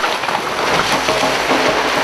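A steady, loud rushing noise with faint sustained music tones coming in about a second in; the rush cuts off abruptly at the end.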